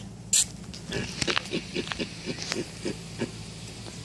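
Male hamadryas baboon grunting in a rapid run of short grunts, about five a second, agitated. A brief hissing burst comes just before the grunts start.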